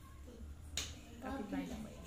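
A single sharp click just under a second in, followed by soft, low voices.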